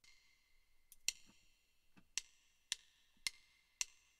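Count-in clicks of a jazz play-along backing track: faint, sharp wood-block-like ticks, two about a second apart, then three more at twice the pace, about two a second, leading into the tune.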